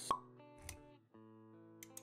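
Animated-intro sound effects over music: a sharp pop just after the start, a short low thud about half a second later, then a held synth chord.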